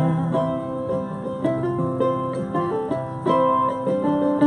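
Instrumental break in an acoustic folk song: a picked lead melody of quick separate notes over acoustic guitar, with no singing.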